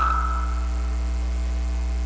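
Steady electrical mains hum in the sound system: a low buzz with a ladder of fainter overtones above it. Just after the start, the echo of the last spoken word dies away.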